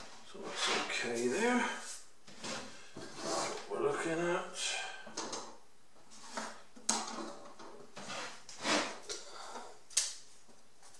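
Wooden model-aircraft wing ribs being picked up, slid and set down on a wooden building board: a string of short clatters and scrapes, sharpest about seven seconds in and at the end. A low mutter of voice is heard in the first half.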